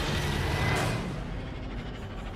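A loud, noisy hit from a horror trailer's sound design, dying away slowly into a rumbling tail.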